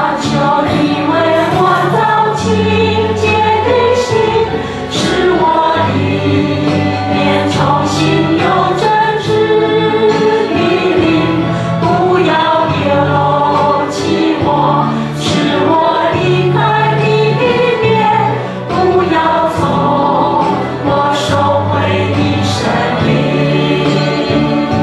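Worship band and singers performing a praise song: several voices singing together over held bass notes, with crisp high strokes recurring through the music.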